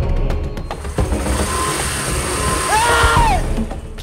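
Tense dramatic background score: a few sharp percussive hits, then a rising swell with a held note that arches and fades out near the end.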